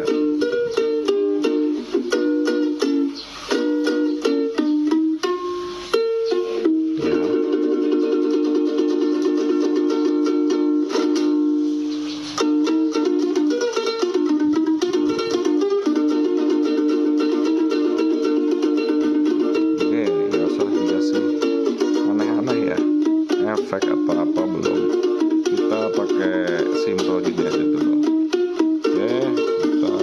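Ukulele strummed in a medley of Javanese songs, chords changing steadily, with a man's voice singing along in the second half.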